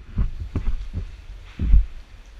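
A few dull low thuds on a GoPro's waterproof housing as the camera is moved and knocked about, about four of them, the loudest and longest near the end.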